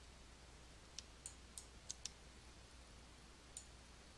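About six faint, sharp computer mouse clicks, most bunched together about a second or two in and one more near the end, over a low background hiss.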